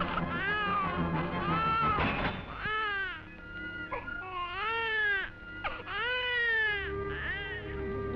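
A cartoon baby crying: about five wails in a row, each rising and falling in pitch, over background music.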